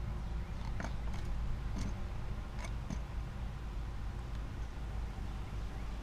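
Plastic quadcopter propellers being handled and fitted onto the motors: a few faint clicks over a steady low background rumble.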